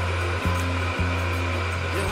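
Personal blender running steadily, blending a smoothie in its tall cup, its motor a continuous even whirr.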